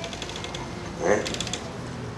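Faint rapid clicking in two short runs, with a brief vocal sound from a man about a second in.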